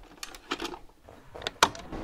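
VHS cassette pushed into the slot of a video cassette recorder: a few light mechanical clicks, then a sharp clunk about a second and a half in as the loading mechanism takes the tape.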